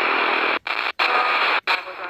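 Radtel RT-950 Pro handheld receiver's speaker hissing with static in AM on the long-wave band, with no station to be heard. The hiss cuts out briefly three times as the tuning knob steps the frequency up 1 kHz at a time.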